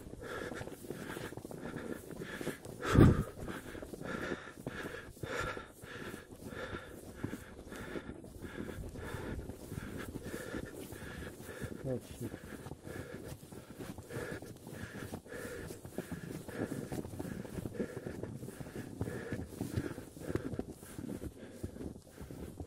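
Heavy panting of a trekker climbing through snow at high altitude, the laboured breathing of exertion in thin air, over footsteps in snow at about two a second. A louder bump about three seconds in.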